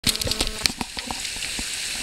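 Steady hiss of flowing river water, with a quick run of sharp clicks and knocks in the first second, while a hooked fish splashes at the surface.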